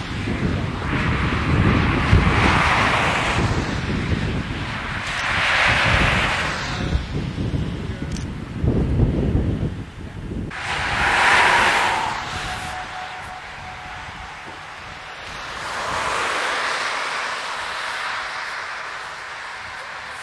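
Cars passing one after another on a main road, each a rush of tyre and engine noise that swells and fades over a few seconds, with some wind noise on the microphone.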